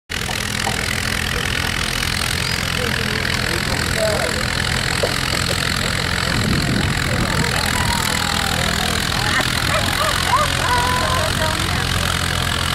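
Tractor engine idling steadily, with a brief fuller swell about six and a half seconds in, under the chatter of voices around the pull track.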